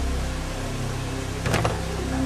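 An iron ring knocker strikes a heavy wooden door, giving a sharp knock, doubled, about one and a half seconds in, over a steady low hum.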